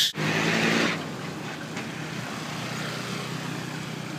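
A motor vehicle's engine, loud for about the first second and stopping abruptly, followed by a steady, quieter background noise.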